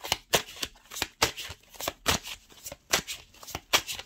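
A deck of oracle cards being shuffled by hand, the cards slapping together in short, quick strokes, about three or four a second and unevenly spaced.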